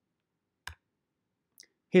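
A single short computer-mouse click, advancing a presentation slide, out of dead silence; a man's voice begins to speak just before the end.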